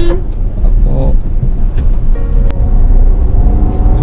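Steady low rumble of road and engine noise inside a moving car's cabin, with one sharp click about halfway through.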